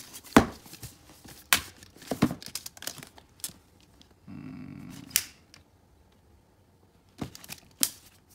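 Cardboard product box and tape measure being handled on a table: scattered sharp clicks and knocks, with about a second of cardboard rubbing on cardboard a little past halfway.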